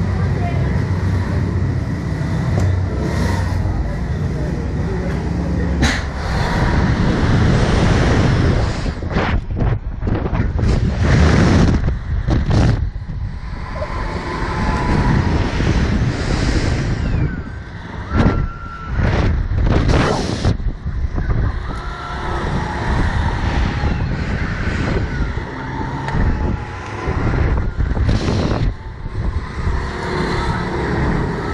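Wind buffeting the microphone of a camera mounted on a Slingshot reverse-bungee ride capsule as it is launched and bounces on its cords, a heavy rumbling rush that swells and drops in gusts. A sharp knock sounds about six seconds in.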